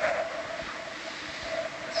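Steady hiss with a faint, wavering hum, background noise of the ROV control room's audio feed, with a short swell of noise right at the start.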